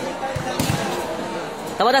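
A few dull thuds of a volleyball against the floor or a hand, over crowd chatter in a large hall; a commentator starts speaking loudly near the end.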